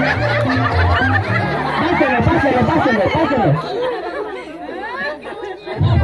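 Party music with a steady bass line over a crowd of voices and laughter. The music cuts off about two seconds in, and the chatter and laughter carry on.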